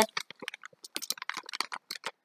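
Clear plastic bag crinkling as it is handled and opened: a quick, irregular run of small crackles and clicks.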